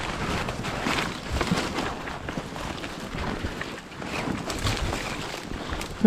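Footsteps in snow and branches brushing and scraping against the camera and carried gear while pushing through thick brush, an irregular run of rustles and soft strikes.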